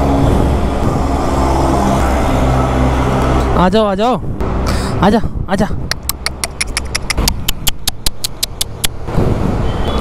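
Road traffic: a motor vehicle engine running with a steady hum. Partway through there is a short voice, and later a quick run of sharp crackles lasting about three seconds.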